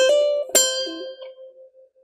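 K'Aloha acoustic ukulele: two notes plucked, one at the start and one about half a second in, the second ringing on and fading away.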